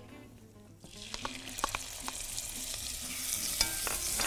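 Minced onion sizzling as it fries in hot oil in a pot. The sizzle starts about a second in and grows louder, with a few light clicks from a wooden spoon stirring against the pot.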